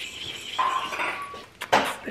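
A puppy whining: a thin, steady high whine lasting about a second, followed by a short sharp noise near the end.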